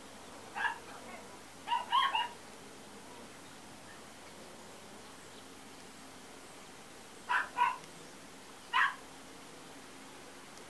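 A dog barking in short, sharp barks: one near the start, three quick ones about two seconds in, then two more and a last one near the end.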